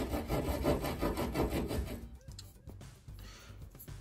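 Scraping and rasping of hand tools working on wood and drywall. It is dense for about two seconds, then turns quieter and sparser.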